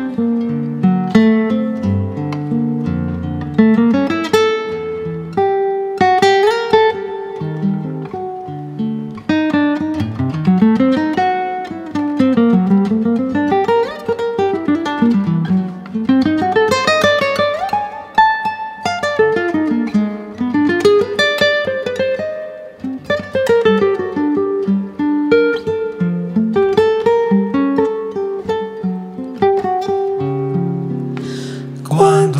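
Nylon-string classical guitar playing an instrumental solo: chords at first, then quick single-note runs that climb and fall in pitch, with chordal playing again near the end.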